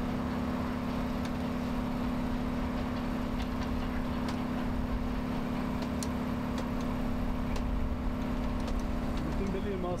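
Go-kart engine idling steadily at one unchanging pitch, with a few light ticks over it. A man's voice starts near the end.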